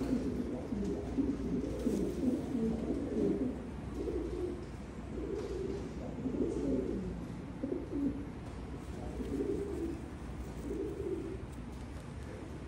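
Racing pigeons cooing: repeated low, warbling coos, nearly continuous for the first few seconds and then in separate short bouts.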